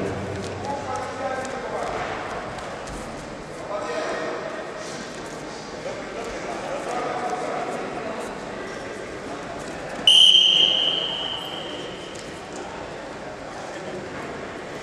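Voices calling out in a large hall, then about ten seconds in a single loud, high referee's whistle blast about a second long, echoing off the hall.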